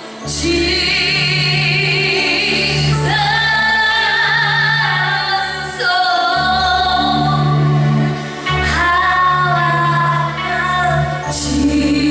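Gospel worship singing: a woman sings into a microphone, with other voices joining in, over long held bass notes that change every few seconds.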